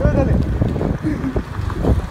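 Wind buffeting the microphone of a camera on a moving scooter: a dense, rough low rumble, with a person's voice breaking through briefly near the start and again past the middle.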